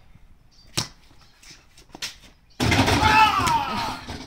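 Two sharp knocks of a basketball bouncing on concrete, then a loud shout whose pitch slides downward, starting about two and a half seconds in.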